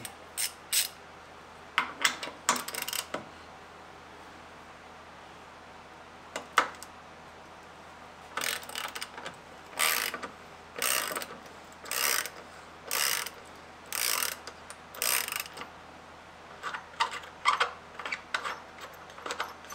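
Hand ratchet wrench with a 3/4-inch socket backing out a bolt on a boat's jack plate: a few scattered clicks at first, then a run of ratcheting strokes about one a second from about halfway, with lighter clicks near the end.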